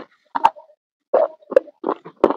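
Close-miked chewing of a crunchy white food bite through a clip-on microphone: about five short, separate crunches spread over two seconds.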